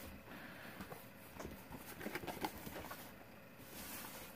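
Faint handling sounds: a few soft taps and rustles as a cardboard portfolio box is folded shut and a fabric-covered journal is moved on a wooden tabletop.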